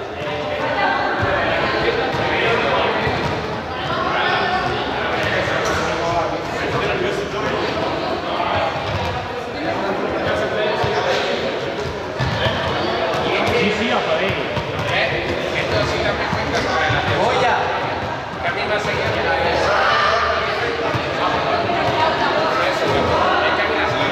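Indistinct chatter of several voices echoing in a large sports hall, with repeated thuds of balls bouncing on the hard floor.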